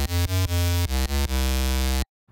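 Buzzy, bright synth bass patch built on Ableton Live's Operator FM synth, playing a run of short bass notes with brief gaps between them and a few changes in pitch. This is the unmodulated starting sound, before any macro tweaks.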